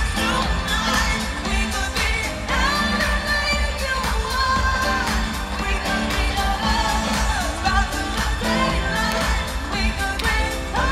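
Live electronic pop music over a stadium PA, heard from within the crowd: a heavy, steady bass beat under synths and sung melody lines that slide up and down.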